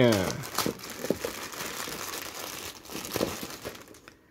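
Thin clear plastic bag crinkling and rustling in irregular crackles as it is pulled open by hand and a plastic figure part is taken out.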